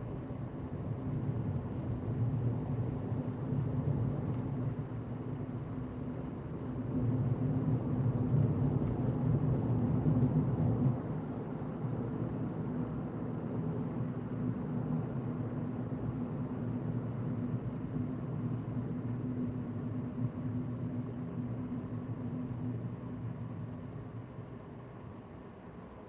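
Car driving, heard from inside the cabin: a steady low rumble of engine and road noise, loudest for a few seconds in the first half, then easing off and dropping near the end as the car slows behind traffic.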